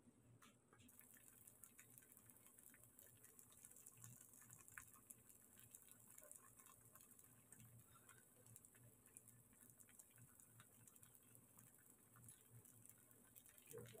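Very faint, irregular crackling ticks of paratha batter frying in oil in a nonstick pan, over a low steady hum.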